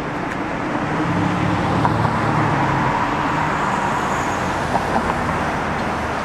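City street traffic: a motor vehicle's engine runs close by over steady road noise, loudest between about one and three seconds in.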